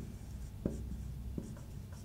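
Marker pen writing on a whiteboard: faint strokes with three light ticks as the tip touches down.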